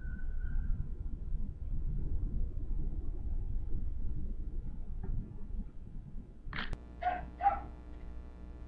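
Steady low rumble of background noise, then near the end a sharp click and three short animal calls in quick succession, about half a second apart.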